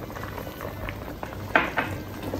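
Coconut-milk mixture with ackee and pumpkin simmering and bubbling in an aluminium Dutch pot. A spoon stirs through it, with a short louder scrape against the pot about a second and a half in.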